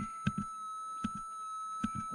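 QED pulse-induction metal detector's threshold tone sounding through its speaker as one steady, thin, high hum while the threshold setting is raised to smooth out its waver. A few soft clicks come through near the start, middle and end.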